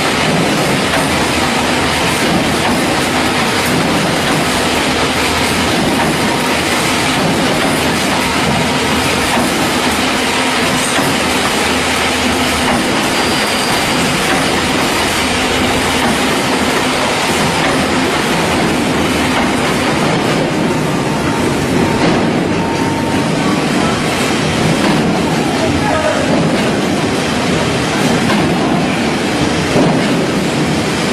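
Gabion hexagonal wire mesh weaving machine running: a loud, steady metallic clatter with an even rhythm.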